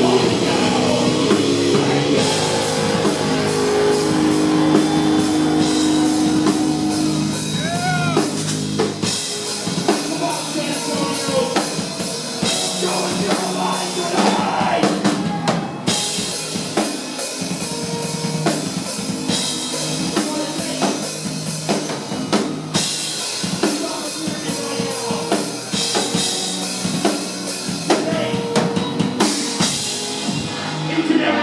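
A heavy metal band playing live, the drum kit most prominent, with electric guitar. About nine seconds in the low bass end thins out, and the drums carry on with sparser guitar.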